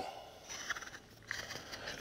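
Faint scratching of a wheel marking gauge's cutter scoring a line into a wooden board, with a small click about two-thirds of a second in.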